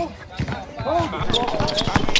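A basketball bouncing on an outdoor hard court as a player dribbles, with several sharp bounces in the second half. Players' voices call out over it.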